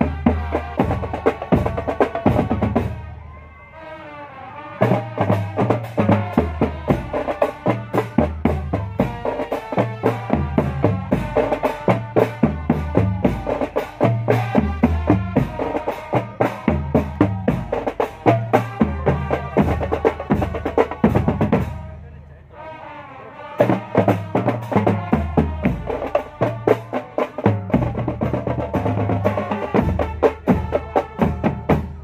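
Marching drum band playing on the move: bass drums and snare drums beat a steady march rhythm under a melody. The drums stop twice for about a second and a half, around three seconds in and again past the twenty-second mark, leaving only the melody before they come back in.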